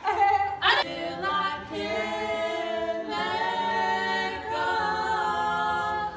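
A small group of voices singing a cappella in close harmony. After a brief loud burst of voice at the start, they hold long chords that shift together every second or so.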